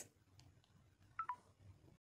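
Near silence, broken a little over a second in by two short electronic beeps in quick succession, the second lower in pitch.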